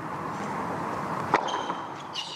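A tennis racket strikes the ball on a serve: a single sharp pop about two-thirds of the way through, over the steady hush of a quiet indoor arena. A brief faint high squeak follows right after it.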